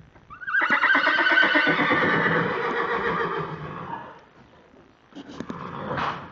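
A horse whinnying: one long, wavering neigh that starts loud about half a second in and fades out over some three and a half seconds. A shorter, quieter sound follows near the end.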